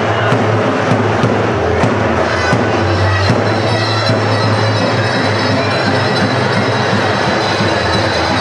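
Loud live Turkish folk dance music, with a davul bass drum striking in a steady beat under a dense band sound.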